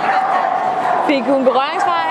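A dog yipping and whining, with a held note for about a second followed by quick gliding cries, over people talking.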